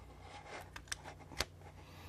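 A few small clicks and handling sounds as a USB Type-A cable plug is pushed into a power bank's USB port, the loudest click about one and a half seconds in, over a faint steady low hum.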